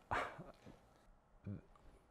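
A man's quick breath and a short hesitation sound between phrases, with quiet room tone in between.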